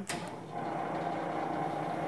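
Hobart H600 commercial mixer starting up: a click as the start button is pressed, then about half a second in the electric motor and gear transmission come up to a steady running hum.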